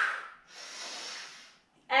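A woman breathing hard with the effort of a Pilates exercise. One strong, short breath ends about half a second in, then a longer, softer breath follows.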